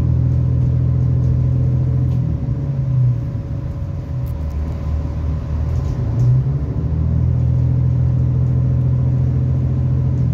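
Irish Rail 29000 class diesel multiple unit heard from inside the passenger saloon: a steady low drone of the underfloor diesel engine and running gear, with a faint steady whine above it. The drone is louder for the first two seconds, eases, then swells again from about six seconds in.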